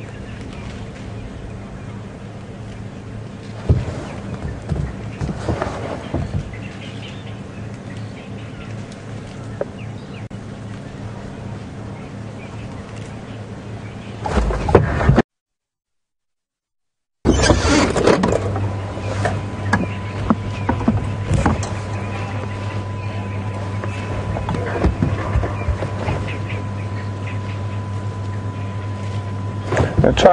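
A steady low hum with faint rustles and knocks. The sound cuts out completely for about two seconds midway, and after it a steady thin high tone runs under the hum.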